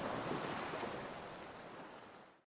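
Ocean waves washing: a steady rushing noise that gradually fades out toward the end.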